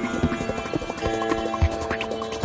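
Abstract, fully electronic synthesizer music: held steady tones with irregular sharp clicks and low knocking hits scattered through them.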